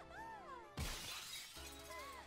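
Cartoon soundtrack: light music with high swooping notes, then a sudden glass-shattering crash sound effect just before a second in, ringing on briefly as it fades.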